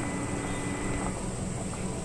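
Pot of dal with tomatoes and green chillies boiling hard on an induction cooktop: a steady bubbling rumble with a thin high steady whine running under it.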